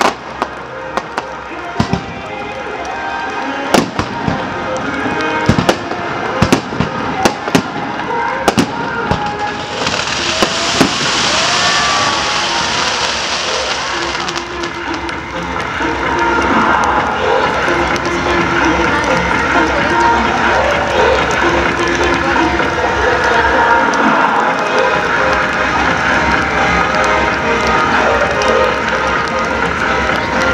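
Aerial fireworks bursting, a dozen or so sharp bangs over the first ten seconds, followed by a few seconds of loud hissing noise. Once the display ends, crowd voices and music carry on steadily.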